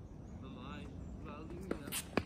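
Two sharp knocks of a tennis ball near the end, the second louder, as the ball is put into play on a hard court.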